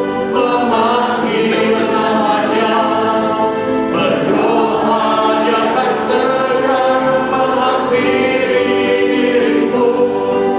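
A worship team and congregation singing an Indonesian worship song together, accompanied by piano and keyboard.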